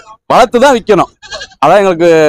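Goats bleating: one loud bleat about a third of a second in, then a longer bleat beginning about one and a half seconds in.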